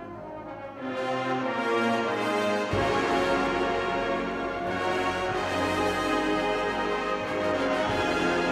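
Marching band playing sustained brass chords: the sound swells about a second in, and the low end comes in suddenly near three seconds in, after which the full band holds a loud chord texture.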